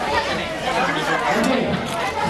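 A crowd of people chatting at once, many overlapping voices with no single speaker standing out.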